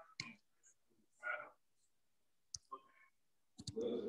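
A single sharp click about two and a half seconds in, between faint snatches of distant speech, with louder speech coming back near the end.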